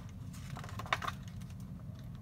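A paperback book page being turned by hand: a few soft paper rustles and light clicks, about a second apart, over a low steady room hum.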